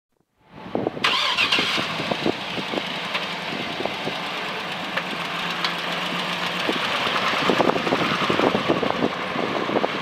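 A 2009 Cadillac Escalade's V8 engine is started about a second in, idles steadily, then runs up as the SUV pulls away in the second half.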